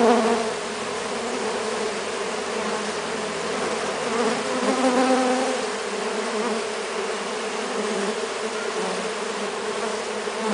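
Continuous buzzing of a swarm of Melipona stingless bees crawling on and flying close around a hand, a wavering drone that swells a little about halfway through.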